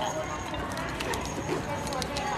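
Steady low background noise with a few light clicks and knocks, the kind of sound made by handling objects.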